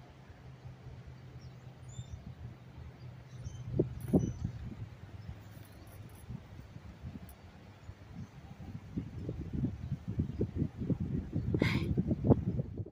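Wind buffeting the microphone in gusts, rising toward the end as a storm front moves in, with a few faint bird chirps in the first seconds.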